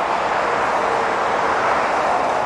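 Dense motorway traffic passing below: the steady rush of tyres and engines from cars and lorries on a four-lane motorway.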